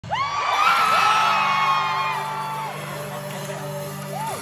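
Concert crowd screaming and whooping, several high voices rising and holding, then fading out about two and a half seconds in, over a low steady musical drone.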